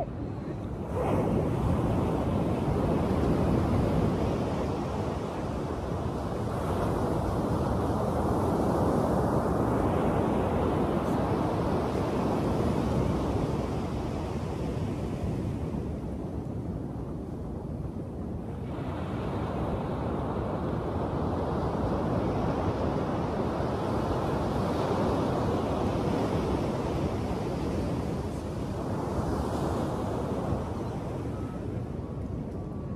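Ocean surf breaking and washing up the beach, a steady rush that swells and eases every several seconds, with wind on the microphone.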